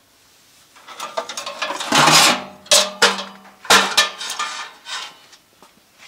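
Metal clattering, scraping and knocking as a vintage battery charger in a metal grille case is pulled out and moved, its flex cords dragging. The loudest knocks come about two seconds in and again near four seconds.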